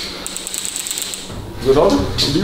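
A rapid, fine mechanical clicking or rattling for about a second, followed near the end by a man's voice.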